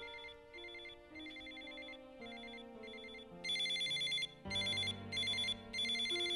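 Phone ringtone ringing: short electronic trills repeating about twice a second, getting clearly louder about three and a half seconds in.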